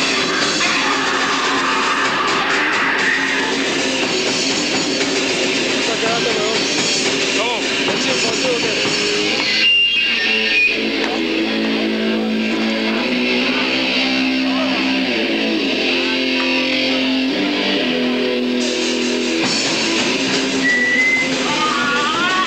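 Live metal band playing loud distorted electric guitars and drums, with a brief break about ten seconds in before the band comes back with slower, held guitar chords.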